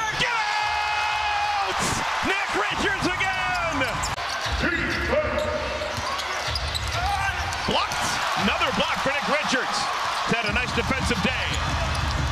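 Basketball game sound on a hardwood court: the ball dribbled and bounced, shoes squeaking, over steady arena crowd noise.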